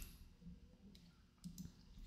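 Near silence with a few faint computer mouse clicks: one about half a second in and two or three close together around a second and a half in.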